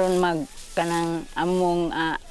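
A voice making three drawn-out sounds, each about half a second long at a steady pitch and falling away at its end.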